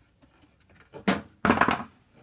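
A sharp knock about a second in, then a short scraping rustle, as a flexible ducting hose and screwdriver are handled against a diesel heater's metal casing.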